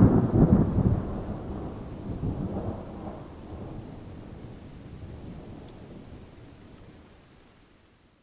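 Thunderstorm sound effect: a rumble of thunder over rain, loudest at the start and fading out steadily over the following seconds.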